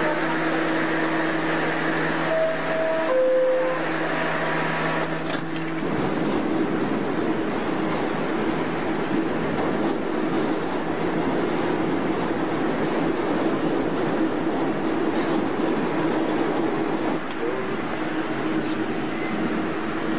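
New York City subway train: for the first few seconds a steady hum with two brief higher tones. About six seconds in the sound changes abruptly to the continuous noise of the train running, heard from inside the car.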